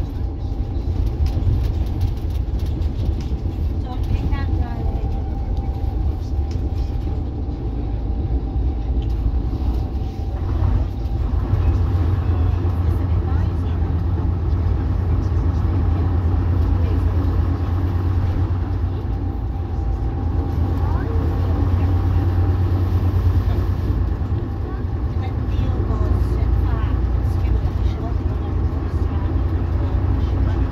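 Leyland Leopard coach's underfloor diesel engine running under way, heard from inside the passenger saloon as a steady low drone that swells in the middle of the stretch.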